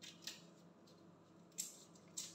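A few short, faint crackles as the shell is pulled off a large raw shrimp, the loudest near the end.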